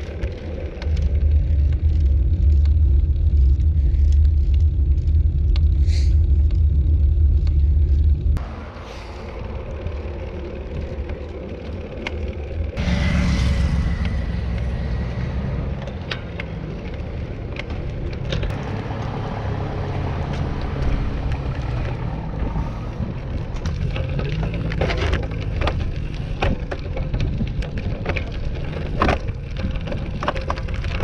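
Wind rumbling on the microphone of a handlebar-mounted camera on a moving road bike, which drops off suddenly about eight seconds in to leave tyre and road noise. Toward the end, dense crackling clicks of bike tyres rolling over a gravel path.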